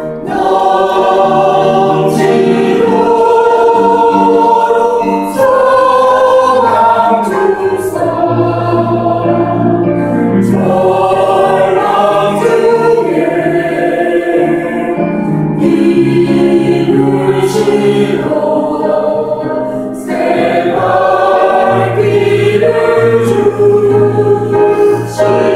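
Mixed church choir of men's and women's voices singing a hymn in Korean, in long held phrases.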